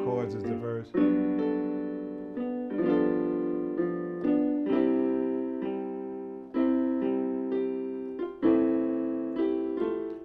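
Electronic keyboard played with a piano tone: slow, sustained chords, a new one struck every second or so, each ringing and fading before the next.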